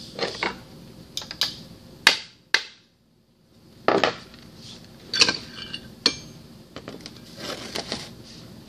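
Metal pump parts knocking and clinking as they are handled on a workbench during a mechanical seal installation: several sharp knocks a second or so apart, the loudest about two seconds in, with handling rustle between them and a brief drop to silence about three seconds in.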